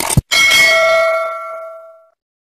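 A quick double click, then a bell chime that rings out and fades away over about a second and a half: a notification-bell sound effect for the clicked subscribe bell.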